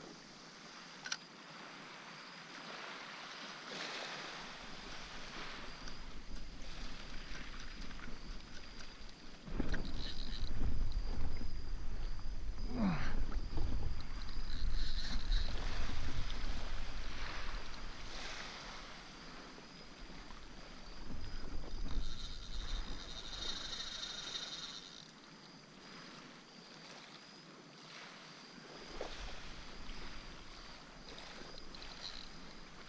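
Wind on the microphone and water noise around a wading surf angler, fairly quiet at first, then much louder gusting about a third of the way in that eases off near the end; a brief high whir sounds about three quarters of the way through.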